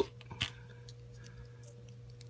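Faint small clicks and ticks of plastic action figure parts being handled and fitted during a head and face swap on a Figma figure, with one slightly louder click about half a second in, over a steady low hum.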